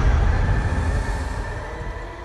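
Low rumbling noise slowly fading away, with a faint steady high tone over it: the dying tail of a dark cinematic intro sound effect.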